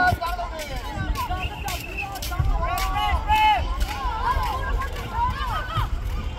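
High-pitched shouted calls from several voices, over a background of chatter.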